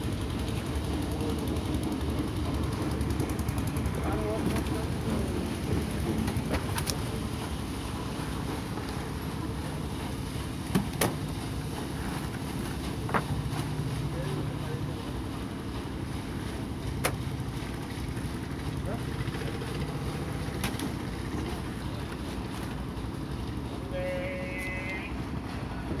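Steady low engine rumble, with a few sharp knocks scattered through it.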